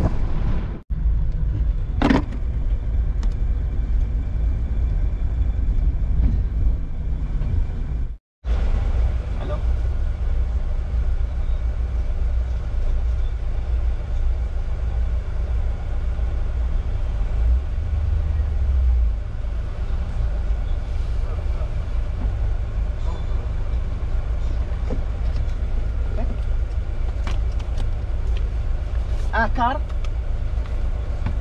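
Piaggio Porter minivan's engine running steadily, a low rumble heard from inside the cab.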